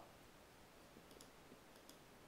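Near silence: quiet room tone with a few faint clicks about a second in and again near the end, from clicking on a computer.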